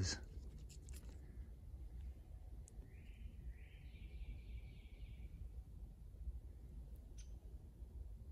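Quiet outdoor background with a steady low rumble, and a distant bird singing a short run of repeated notes about three seconds in, lasting about two seconds.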